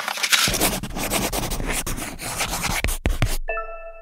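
Outro logo sting: a scratchy, crackling noise texture broken by sharp clicks, which cuts off about three and a half seconds in and gives way to a held electronic chord.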